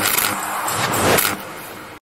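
Outro logo-animation sound effects: noisy swells, the loudest about a second in, then fading out near the end.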